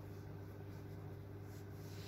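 Faint room tone with a steady low hum; no distinct sound stands out.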